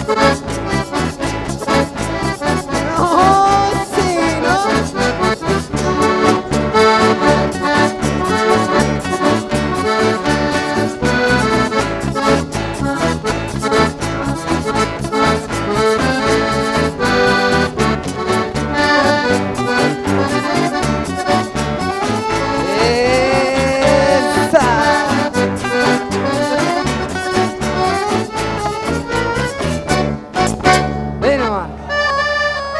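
Instrumental dance music led by an accordion over a steady beat, with a few sliding melodic runs.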